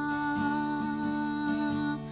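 Gospel song: one long held note over plucked acoustic guitar, the guitar accents coming about twice a second.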